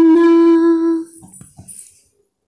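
A single unaccompanied singing voice holding the last note of the song steadily, ending about a second in, followed by a few faint knocks.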